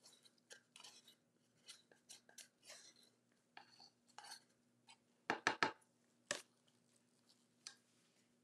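Wooden craft stick scraping and tapping against small plastic cups while scraping resin out into a mixing cup: faint scattered scrapes, with a quick run of louder clicks about five and a half seconds in and one more a moment later.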